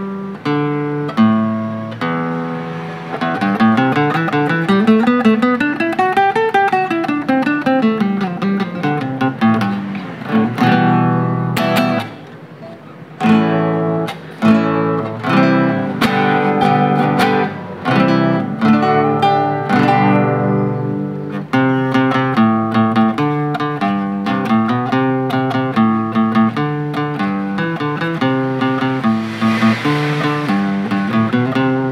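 Athena AT005CL meranti-bodied nylon-string classical cutaway guitar, plucked as a sound test. A run of notes climbs and then comes back down over the first several seconds. After a short quieter spell about twelve seconds in, it goes into a continuous picked melody over bass notes.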